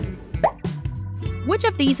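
Background music for a quiz video, with a steady low bass line. About half a second in there is a short upward-gliding blip sound effect as the next question appears, and a voice starts reading the question near the end.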